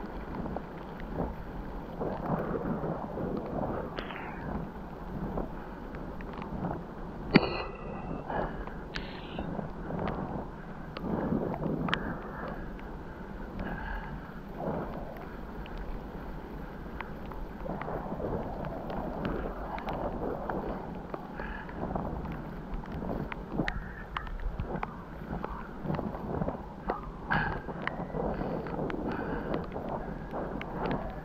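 Bicycle rolling along a leaf-covered dirt trail: tyres crunching over leaves and dirt, the bike rattling and knocking over the rough ground, with wind on the microphone. A sharp knock about seven seconds in, with a few brief high squeaks around it.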